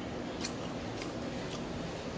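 Person chewing crunchy food close to the microphone: three sharp crunches about half a second apart, over a steady low background hum.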